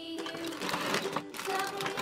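Crinkling and rustling of a plastic bag of Lego Duplo bricks, with the bricks clicking inside as it is pulled out of a cardboard box, over steady background music.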